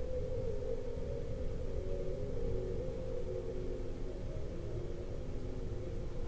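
Faint steady hum made of several held low tones over a low rumble, unchanging throughout.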